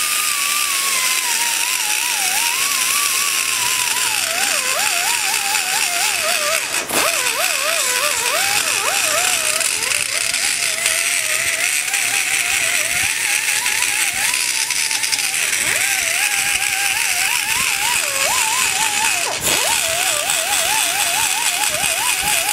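Die grinder with a long-shank bit cutting into the exhaust-port bowl of a Ford 2.0 cylinder head, shaping the bowl behind where the valve guide has been cut away. Its whine wavers continuously up and down in pitch as the bit loads and unloads against the metal, with two brief dips, about a third of the way in and again near the end.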